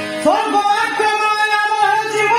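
Live music of an Odia gitinatya (musical drama): a singer with instrumental accompaniment, sliding up into a long held note shortly after the start and holding it.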